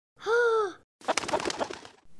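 A chicken making one short, smooth call, then about a second of rough, fluttering squawking that fades.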